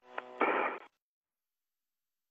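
A brief burst on the space-to-ground radio loop: a short buzzy tone, then a louder hiss of static, all over in under a second and cut off abruptly.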